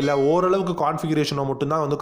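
A man narrating in Tamil, talking steadily with no break.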